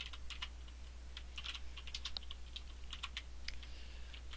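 Typing on a computer keyboard: a run of irregular, light key clicks, over a steady low hum.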